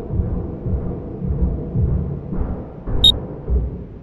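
Low, rumbling background music with deep, drum-like hits and a short high ping about three seconds in, fading down near the end.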